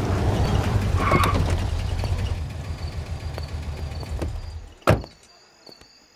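An SUV's engine running low as it drives up and comes to a stop, fading out, then a single car door shut about five seconds in. Faint crickets chirp near the end.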